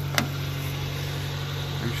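1990 Subaru Sambar's carbureted engine idling steadily as a low hum, with a single sharp click of the door handle and latch as the door is opened, just after the start.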